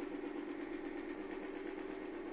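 Sharp inverter air-conditioner's indoor blower fan motor running with a steady hum.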